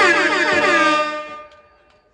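Air-horn style sound effect in the backing music: a loud, bright horn blast whose pitch slides downward over and over, fading out about a second and a half in as the music stops.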